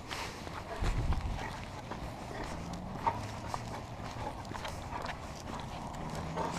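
Footsteps and a golden retriever's claws clicking on an asphalt street as it is walked on a leash, with a low thump about a second in.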